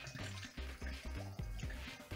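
Background music with a steady, repeating bass beat, over a faint trickle of caustic soda solution being poured through a funnel into a glass bottle.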